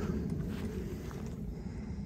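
Wind buffeting the microphone: an uneven low rumble that rises and falls in small gusts.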